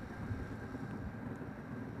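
Faint, steady background hum and hiss with no distinct events.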